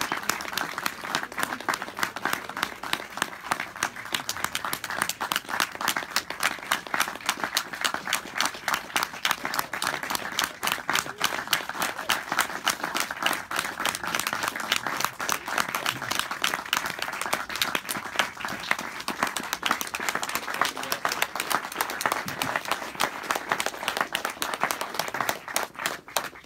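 Audience applause: many people clapping fast and steadily without a pause, stopping abruptly at the end.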